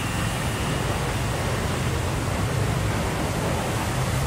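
Steady hum and hiss of street traffic, with an even low engine drone.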